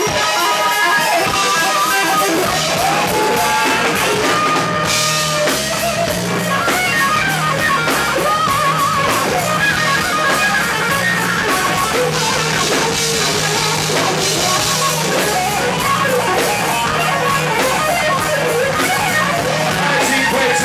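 Live rock band playing: an electric guitar takes a lead line with bent, gliding notes over bass and a drum kit.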